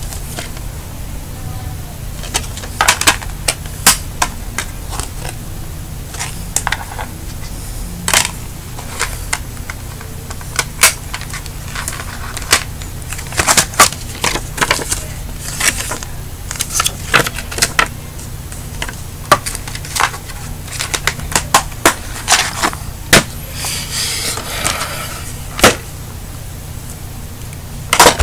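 Hard plastic DVD cases being handled: irregular sharp clicks and clacks, some loud, over a steady low hum, with a short rustle near the end.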